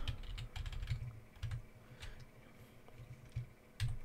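Light typing on a computer keyboard: a few separate, irregular keystrokes as a search word is typed, with a pair of key clicks near the end as Enter is pressed.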